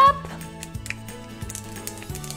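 Light background music with held low notes, over which a few small plastic clicks sound as hands work open an orange plastic Kinder egg capsule.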